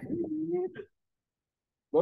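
A man's voice trailing off at the end of a phrase in a low, drawn-out sound lasting under a second, then silence for about a second.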